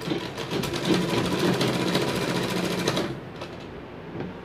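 Sewing machine running fast, stitching a seam through fabric in a rapid, steady clatter, then stopping about three seconds in.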